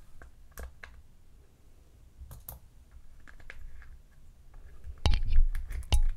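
Small scattered clicks and light plastic-and-rubber handling noises as a tiny 1/18-scale crawler wheel's plastic beadlock is taken apart, with louder knocks and rubbing about five seconds in.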